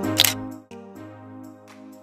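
Background music with held notes, and a single camera shutter click about a quarter second in; after the click the music thins to quieter sustained tones.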